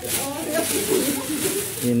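Several people talking at once in the background, with one voice coming forward briefly near the end.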